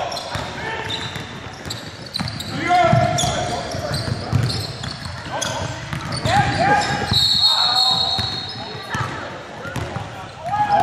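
Pickup basketball game sounds in a large gym: the ball bouncing, feet on the hardwood and players shouting short calls to each other. About seven seconds in, a steady high whistle sounds for over a second, typical of a referee stopping play.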